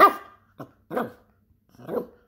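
Miniature poodle barking: three barks about a second apart, with a short, weaker one after the first.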